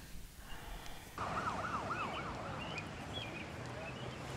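An emergency-vehicle siren in its fast yelp, the pitch rising and falling several times a second, heard for about a second starting just past the one-second mark over a steady outdoor background hiss. A few short, faint high chirps follow.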